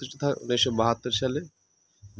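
A man's voice speaking in short bursts over a steady high-pitched insect-like chirring. About a second and a half in, the sound cuts out completely.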